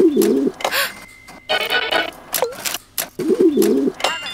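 A dove cooing twice, once at the start and again about three seconds in, with a brief noisy sound between the calls.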